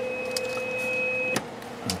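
Two-tone audio test signal, a steady low tone and a steady high tone held together, as injected into a CB radio to check its modulation. The tones cut off with a click about a second and a half in, and a second click follows near the end.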